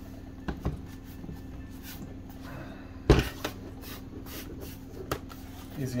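Plastic snap-fit clips of a laptop's bottom cover being pressed into place around its edge: a handful of sharp plastic clicks, the loudest about three seconds in.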